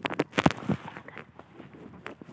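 Rustling, crackling and scraping of leafy vine stems and dry soil under a gloved hand digging at the base of a plant, with several sharp snaps in the first second, the loudest about half a second in, then fainter scraping.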